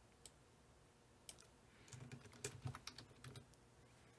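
Faint typing on a computer keyboard: a couple of single clicks, then a short run of keystrokes about two seconds in as a folder name is typed.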